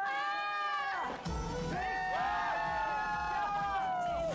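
Young men screaming and shrieking in excitement: one long high scream in the first second, then several overlapping shrieks, with pop music playing underneath.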